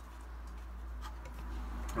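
Steady low room hum with a few faint light ticks, as a paintbrush is loaded with white gouache in a palette.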